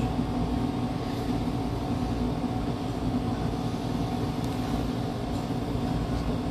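A steady low hum and rumble of machine-like background noise, with a constant tone in it and no sudden sounds.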